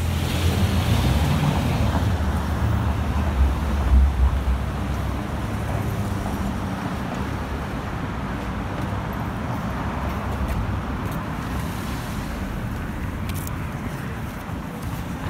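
City street noise of passing traffic, with wind buffeting the microphone as a low rumble that is heaviest in the first few seconds and then settles.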